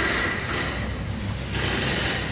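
A small machine running steadily in the background, a low hum with a faint high whine over it.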